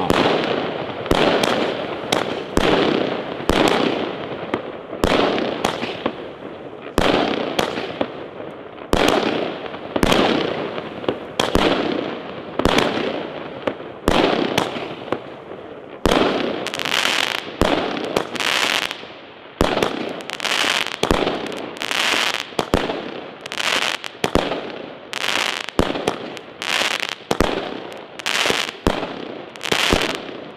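A consumer firework battery (cake) firing shot after shot, about one or two a second. Each shot is a sharp bang that trails off in a rush of noise as the aerial shells burst.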